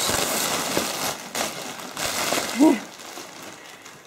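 Clear plastic packaging crinkling and rustling as a hand rummages through it inside a cardboard box, dying away near the end.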